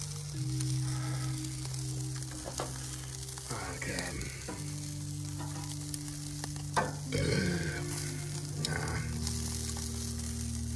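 Chicken wings sizzling on a gas grill's grate, a steady hiss, with a few sharp clicks of metal tongs against the grate as the wings are moved. Steady low tones that shift pitch every few seconds run underneath.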